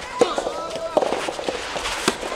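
Soft tennis rally: sharp pops of rackets striking the soft rubber ball, about once a second, three in all. A drawn-out vocal shout is held between the first two hits.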